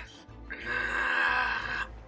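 A boy's voice holding one long straining grunt, starting about half a second in and lasting about a second and a half: the effort of trying and failing to lift the weapons. Background music plays beneath.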